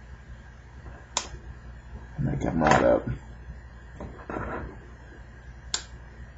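Two sharp plastic clicks, about a second in and near the end, from prying a Droid Incredible's plastic housing and its clips apart with a plastic pry tool. Between them, brief bits of a man's voice.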